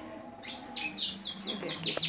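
Small cage birds chirping: about half a second in, a run of quick, evenly spaced high chirps begins, each sliding down in pitch.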